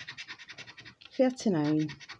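Plastic scratcher scraping the silver coating off a paper scratchcard in quick, even strokes, about ten a second. A voice comes in near the end.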